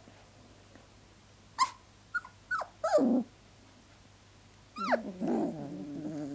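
Three-week-old puppies whimpering and whining: a few short high cries, the last sliding down in pitch, then near the end a longer run of louder, falling whines.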